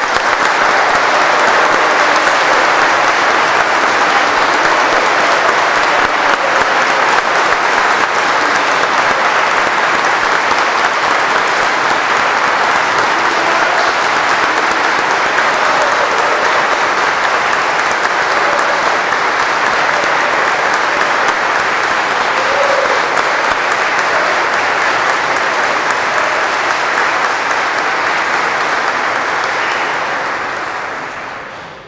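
A large congregation applauding steadily in a big church for about half a minute, easing off near the end.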